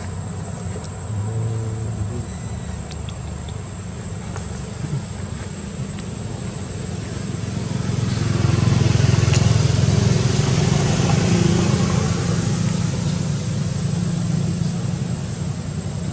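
A motor vehicle running steadily with a low engine rumble, growing louder about eight seconds in and then slowly easing off, as it passes by.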